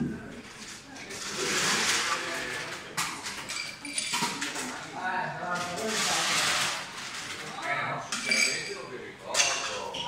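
Ice cubes scooped and rattling into two glasses, one after the other, in two long stretches about four seconds apart, with glassy clinks.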